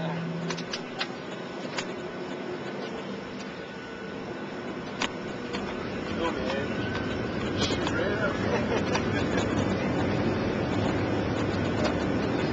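Steady jet-airliner cabin noise from a Boeing 737's engines and the air rushing past the fuselage, getting louder about halfway through. Quiet voices and a few small clicks sit over it.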